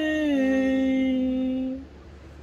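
A man's voice holding one long sung note that steps down a little in pitch about half a second in and stops near the end.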